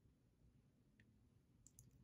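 Near silence: room tone, with one faint brief click about halfway through.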